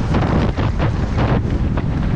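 Wind buffeting the helmet camera's microphone on a downhill mountain bike descending at about 25 mph, with a dense low rumble and repeated short rattles from the bike and tyres over the dirt and rocks.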